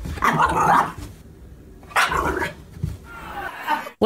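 A dog barking: two barks about two seconds apart, the first lasting nearly a second, the second shorter.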